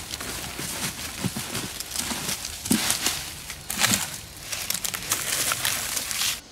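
Dry leaf litter and soil rustling and crunching in irregular strokes as gloved hands scrape and pull debris away from the base of a cycad trunk.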